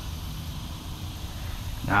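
Steady low outdoor rumble, with a man's voice starting near the end.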